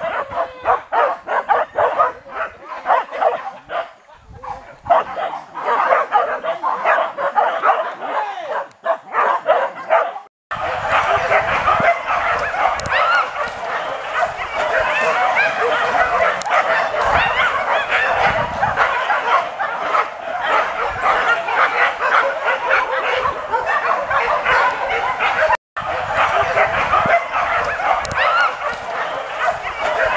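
A pack of hunting dogs barking and yelping nonstop, many voices overlapping, as they bay a wild boar. The sound cuts out for an instant twice, about ten seconds in and again near the end.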